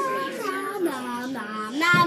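A child singing in a sing-song voice, the pitch sliding down over the first second and a half and rising again near the end.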